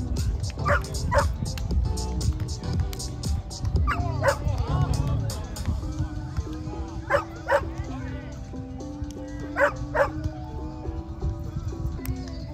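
A dog barking in pairs, two quick barks at a time, four times about three seconds apart, over music.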